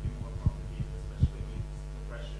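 Steady low electrical hum from a live microphone and sound system, with a few soft low thumps, the clearest about half a second and a second and a quarter in.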